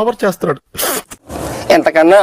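A man speaking, broken just under a second in by a brief high hissing swish, then talk starting again near the end.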